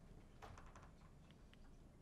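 Near silence with a few faint light clicks: a small cluster about half a second in and a couple of single ticks later.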